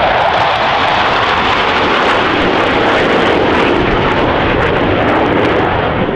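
Jet noise from four Boeing F/A-18F Super Hornets flying over in formation, each powered by twin General Electric F414 turbofans. The sound is loud and steady, and its tone sweeps down and then back up as they pass.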